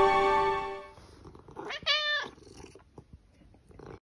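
A held music chord fades out in the first second. About two seconds in comes a single cat meow, about half a second long, rising then falling in pitch.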